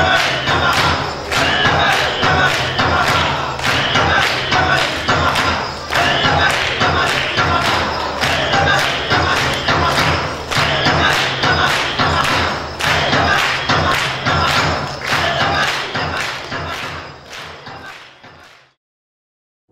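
Dance music for a traditional Even stage dance: a fast, steady drumbeat with voices, fading out near the end.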